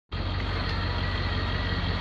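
International T444E 7.3-litre diesel V8 of a school bus idling steadily, with an even low pulsing and a faint steady high tone above it.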